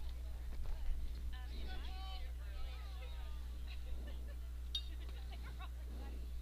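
Faint, distant voices of people around a baseball field calling out, over a steady low hum.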